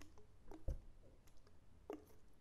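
Fingers handling and tapping a plastic lotion bottle: a few scattered clicks, with a soft, heavier knock about two-thirds of a second in.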